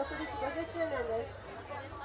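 People talking: one voice is clearest in the first second or so, with chatter around it over a steady low hum.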